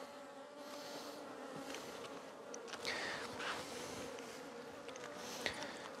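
Honeybees buzzing around an open nucleus hive, a faint steady hum of many wings.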